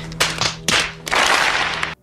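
A crowd clapping, a dense patter of applause that swells about a second in.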